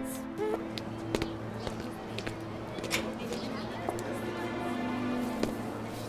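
Background drama score of sustained low, held tones, with a few sharp clicks or knocks scattered through it.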